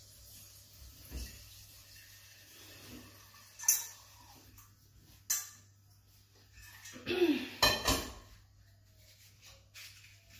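Metal pot and utensils clanking as cookware is handled: a sharp clank about a third of the way in, another about halfway, and a louder run of clattering near the end.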